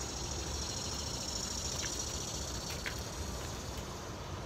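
Outdoor summer ambience: a steady high-pitched insect drone over a low rumble, with a couple of faint short chirps near the middle.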